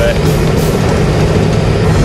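Road noise inside a moving car's cabin: a steady low rumble of engine and tyres.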